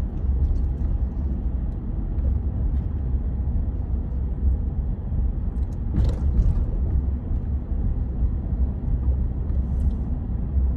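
Steady low rumble of a car driving slowly, heard from inside the cabin, with a brief clatter about six seconds in.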